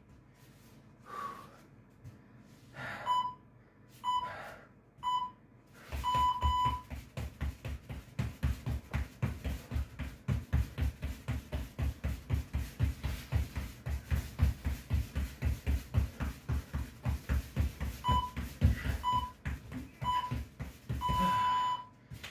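Interval timer beeping three short beeps and one long beep to start a set, then rapid, even footfalls on the floor, about four a second, from fast mountain climbers for about twelve seconds. Three short beeps and a long beep end the set.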